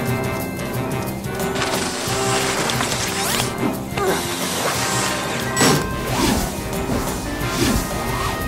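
Fast cartoon chase music, with several quick sliding and crashing sound effects laid over it from about halfway through.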